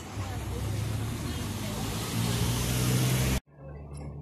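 A motor vehicle's engine running close by on the street, growing louder and peaking about three seconds in, then cut off suddenly.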